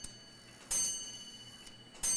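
Strike train of a Chelsea ship's bell clock movement tripping under power: a sharp metallic snap about two-thirds of a second in, ringing on with a bell-like tone that fades over about a second, as the train runs into its first count. A faint click comes just before it.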